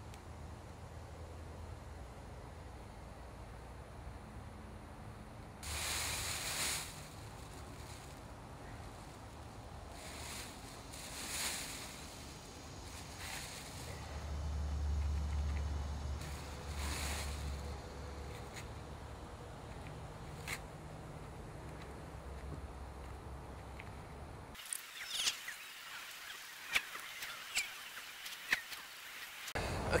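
Faint outdoor background with a low rumble and a few soft rustles, from fiberglass mat being laid on a mold and dabbed with a resin brush. About 25 seconds in, the background drops away abruptly, and a few light taps and clicks follow near the end.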